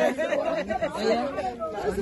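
Several people's voices talking over one another.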